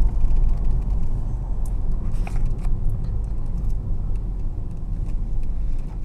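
Steady low engine and road rumble heard inside a Ford car's cabin as it drives slowly into a petrol station forecourt, with a few faint clicks.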